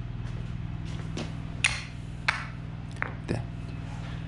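A few sharp knocks of hockey gear being set down on a concrete floor, the loudest about one and a half seconds in, over a steady low hum.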